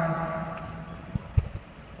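A pause in a woman's speech over an arena PA: her amplified voice trails off and its echo dies away into faint hall noise, with two short low thumps a little over a second in.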